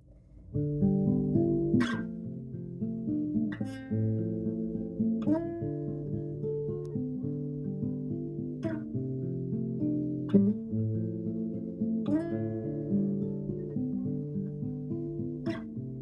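Acoustic guitar playing a repeating pattern of picked chord notes, starting about half a second in, with a sharp accent that recurs roughly every second and three quarters.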